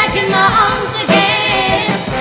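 Female vocal group singing a pop song, with sung notes held and bent throughout.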